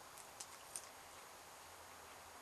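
Near silence, with a few faint clicks in the first second from lips puffing on a tobacco pipe.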